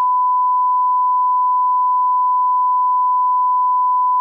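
Television test tone: one steady, unbroken beep at a single pitch, the reference tone that goes with colour bars.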